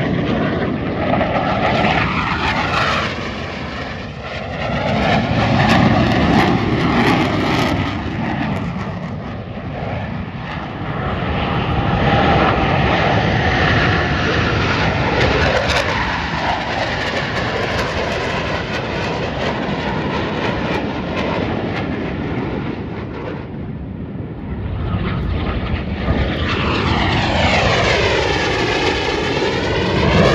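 Jet noise from US Navy Blue Angels F/A-18 fighters flying overhead, swelling and fading as the jets pass one after another. Near the end a jet comes over close, with a sweeping, swishing change in tone, and this is the loudest moment.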